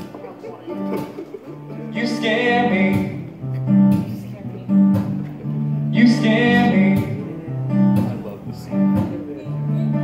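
Acoustic guitar strummed in a steady chord pattern as a song's instrumental intro, with a short wordless vocal phrase about two seconds in and again about six seconds in.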